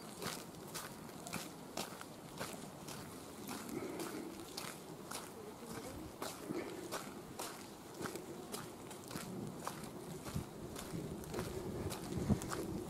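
Footsteps of a person walking at a steady pace, about two steps a second, faint against a quiet outdoor background.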